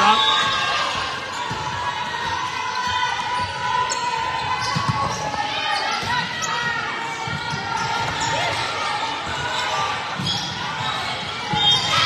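Indoor volleyball rally in a reverberant gym: the ball thumping off players' arms and hands, with voices of players and spectators throughout. The voices swell louder near the end as the point ends.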